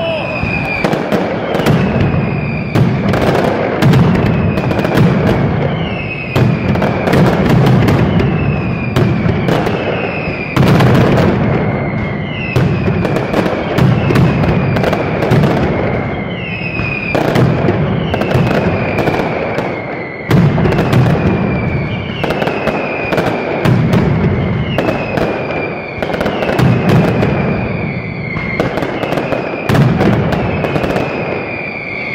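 Mascletà firecrackers going off in a dense, continuous barrage of rapid bangs and aerial reports. Short falling whistles recur about every second over the bangs.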